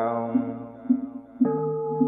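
Buddhist chant music: a sung chant line tails off, and about one and a half seconds in a new note begins and holds steady, over a soft beat about twice a second.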